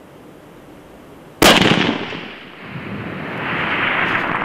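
A single shot from a 7mm WSM hunting rifle about a second and a half in: a sharp crack followed by a long rolling echo that fades, then swells again over the next two seconds.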